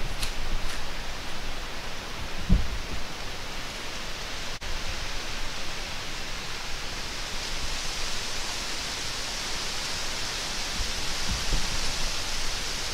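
Steady, even hiss of quiet woodland ambience picked up by a camera microphone, with one soft low thump about two and a half seconds in.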